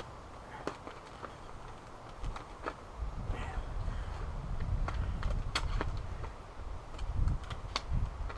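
A paper envelope being slit open with a knife and handled: paper rustling with scattered sharp clicks, over a low rumble from about three seconds in until near the end.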